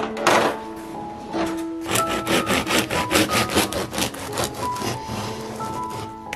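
Bread knife sawing through the crusty loaf of home-baked bread on a wooden board, a quick run of strokes from about two seconds in, over background music.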